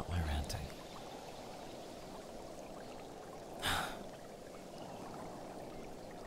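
A man's low hum in the first moment, then a single audible breath about halfway through. A steady, muffled rushing background ambience runs under both.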